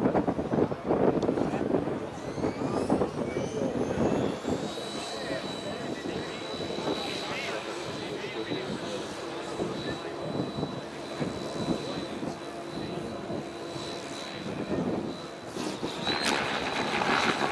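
Thunder Tiger Raptor G4 E720 electric RC helicopter spooling up: a whine rises in pitch over the first few seconds, then holds as one steady high tone while the helicopter flies.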